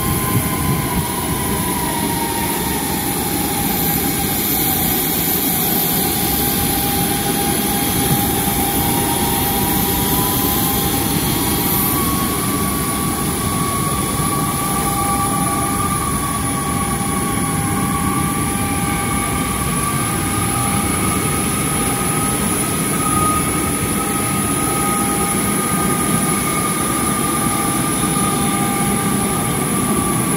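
Airliner auxiliary power unit running with a steady turbine whine and rush, with a tone that slowly dips and then rises in pitch over several seconds.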